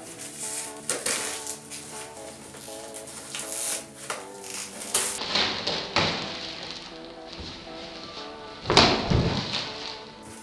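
Background music over rustling and crinkling as plastic-wrapped cardboard scratcher boxes are handled and unwrapped, with a loud thump a little before the end.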